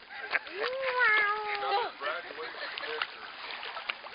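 A long drawn-out vocal cry held for over a second, dipping in pitch as it ends, followed by the light splashing and lapping of pool water as a dachshund paddles along.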